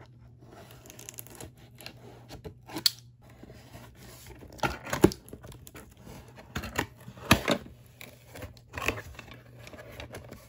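Box cutter slitting the packing tape on a cardboard box and the box flap being pried open: a string of short, sharp, scratchy rips, the loudest about halfway through.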